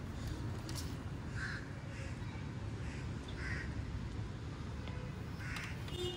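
Short, harsh animal calls, three of them about two seconds apart, over a steady low rumble.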